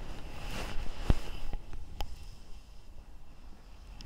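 Handling noise as a perfume bottle is put away: rustling, a dull knock about a second in and a sharp click about two seconds in.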